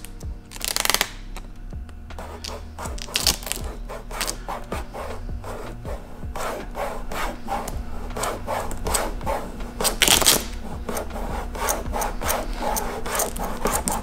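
Fingers and thumb rubbing vinyl tint film down onto a car headlight lens. A rapid run of short rubbing strokes, several a second, with a louder burst about ten seconds in.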